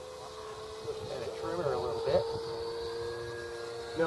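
Small electric ducted fan (64 mm EDF) of a foam RC jet in flight, giving a steady high whine.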